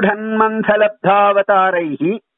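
A man's voice reciting Sanskrit verse in a chanting tone, the phrases held on a nearly level pitch with brief breaks between them.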